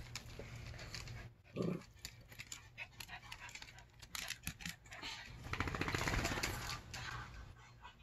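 Small dog making short vocal sounds as it moves about on a padded dog bed: a brief pitched sound about a second and a half in, and a longer, louder rough sound about three-quarters of the way through.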